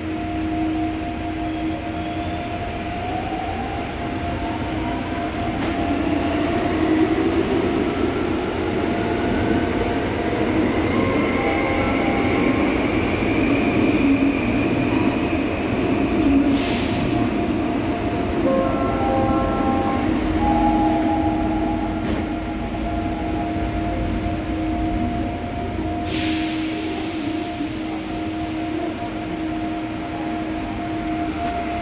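Subway car interior running noise from a PMSM-driven Seoul Line 5 train: wheels on rail under a steady motor hum, with the traction inverter's whine rising in pitch as the train picks up speed. Two short hisses come in the second half.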